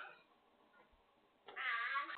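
A young child's high-pitched squeal, starting about one and a half seconds in, its pitch wavering. A sharp knock sounds right at the start.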